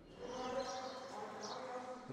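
A faint, steady buzzing hum of background ambience.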